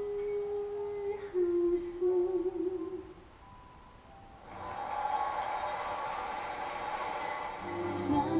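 Music: a sung note held, then stepping slightly lower in pitch and ending about three seconds in. After a short lull, a soft, even wash of sound comes in about halfway through.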